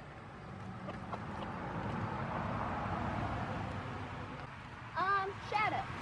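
A vehicle going past, its rushing noise swelling and fading over a few seconds. Near the end, two short, high, falling calls as the hens are chased.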